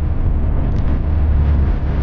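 Wind buffeting the microphone of a bicycle-mounted camera during a fast downhill ride: a loud, steady low rumble.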